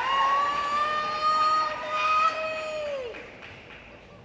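A single high held note that slides up into pitch at the start, holds steady for about three seconds, then drops away and stops, heard over gym crowd murmur.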